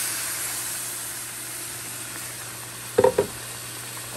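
Blended tomato, onion and garlic liquid sizzling and hissing in a hot pot of browned rice and chicken, the sizzle slowly dying down as it comes to a boil. A short clatter about three seconds in.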